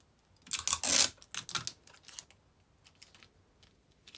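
Sticky tape pulled off a desk tape dispenser and torn off, a loud rasp about half a second in, followed by a few light taps and rustles as the tape is pressed down onto card.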